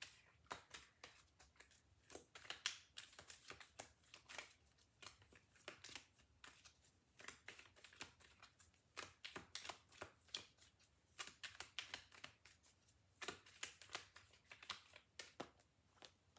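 Tarot cards being shuffled by hand: a faint, continuous run of soft, irregular card clicks, several a second.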